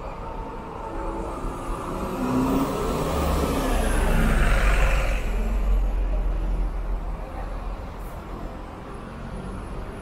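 A diesel city bus driving past close by, its engine rumble and tyre noise swelling to a peak about halfway through and then fading away, over steady street traffic.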